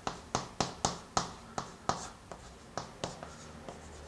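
Chalk tapping and scratching on a chalkboard as handwritten characters are written: a quick run of short, sharp strokes, about three a second, that thins out toward the end.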